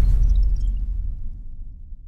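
Logo-intro sound effect dying away: a deep rumble fading out, with a few faint high sparkling glints near the start.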